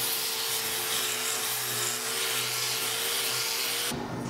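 Angle grinder fitted with a coarse abrasive pad, scouring rust off the back of a rusted steel sheet. The motor runs steadily under load with a rough scrubbing hiss, then cuts off just before the end.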